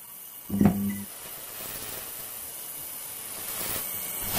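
Logo sound effects for an animated neon sign: a short electric buzz about half a second in, followed by a steady hiss that swells slightly toward the end.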